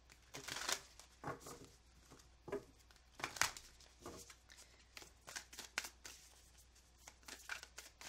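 A deck of tarot cards being shuffled by hand: irregular soft snaps and flicks of the card edges, the sharpest about three and a half seconds in.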